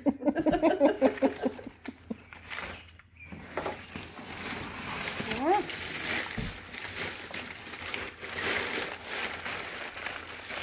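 Crumpled brown packing paper rustling and crinkling as it is pulled from a cardboard box and unwrapped by hand, starting about three seconds in.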